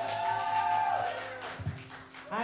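Female vocalist holding a long final note over the live band's sustained closing chord; the note and chord fade out about a second and a half in, ending the song.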